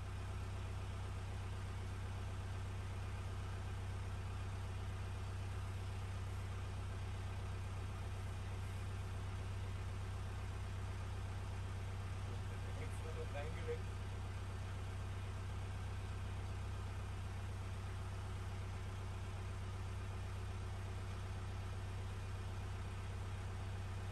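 Boat's inboard engine running steadily under way, a constant low hum heard from inside the wheelhouse. A brief higher-pitched sound breaks in about halfway through.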